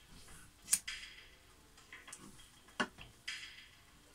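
A few faint, sharp clicks spread over a few seconds, over a low hiss.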